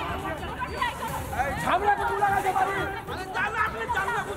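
Several men talking over one another in an argument, with crowd chatter around them.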